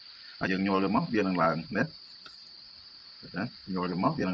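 A man speaking in two short stretches, with a steady high-pitched drone underneath, typical of insects such as crickets.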